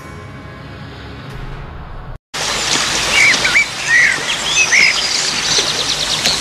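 Soft sustained score music fades under the title card, cuts off abruptly about two seconds in, and gives way to birds chirping over a steady outdoor hiss.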